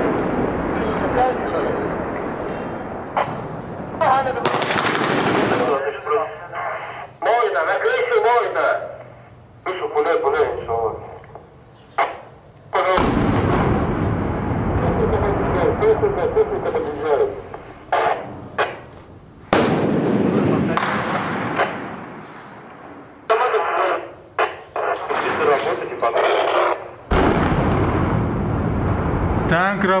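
Urban gunfire: volleys of automatic fire and single shots, with men's voices shouting between them. Two heavier blasts, about 13 seconds in and about three seconds before the end, mark hits on the lower floors of the building being fired on.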